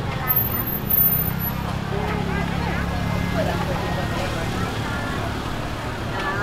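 Busy night-street ambience: voices of people chatting around the walker, over a motor vehicle engine running close by that stops or fades about a second before the end.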